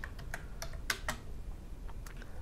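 Computer keyboard being typed on: about six separate keystrokes at an uneven pace.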